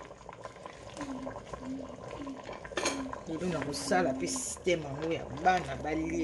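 Fish in chilli sauce simmering in a stainless steel pot, stirred with a wooden spoon. A person's voice comes in about halfway through.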